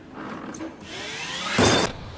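Small electric utility cart's motor whining, rising in pitch as it drives, then a short loud bump near the end.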